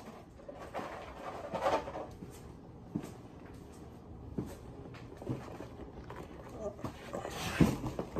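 Cardboard cereal boxes being handled, with a rustling stretch about a couple of seconds in and a few soft knocks spread through the rest.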